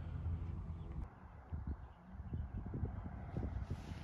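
Low wind rumble on the microphone, with a few faint knocks scattered through the middle.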